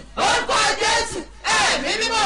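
A woman's voice praying aloud in phrases, with a short pause about one and a half seconds in.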